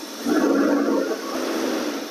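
Ford 289 V8 engine brought up from its idle of about 600 rpm to around 1,200 rpm, the point where the distributor's mechanical advance begins to come in. The engine gets louder about a quarter second in and holds there.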